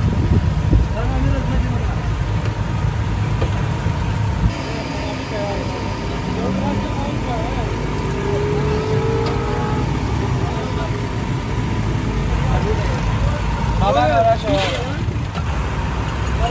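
Busy street ambience: a steady low rumble of road traffic and engines with scattered voices of people around, and a sharp clink near the end.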